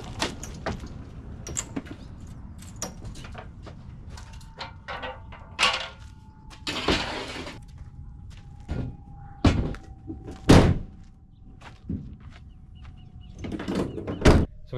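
Scattered knocks, clanks and thuds as a dirt bike is pushed up a metal loading ramp into a van and the gear and rear doors are handled. The loudest is a single heavy bang about ten and a half seconds in. A faint steady tone runs through the middle.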